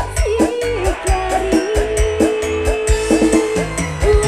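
Live dangdut band playing: a steady, even drum beat with bass and keyboards, and a long held melodic note through the middle of the passage.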